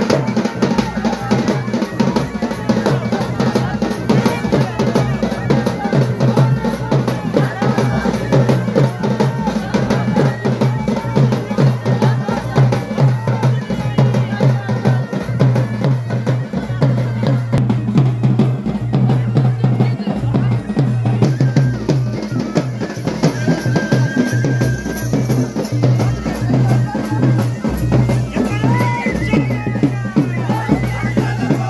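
Traditional drums played in a fast, steady processional rhythm.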